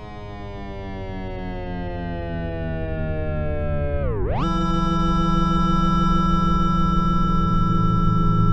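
Yamaha DX7 IID FM synthesizer patch sounding one sustained, harmonically dense tone that slowly slides down in pitch as it swells in loudness. About four seconds in, the pitch swoops down sharply and jumps up to a new steady note.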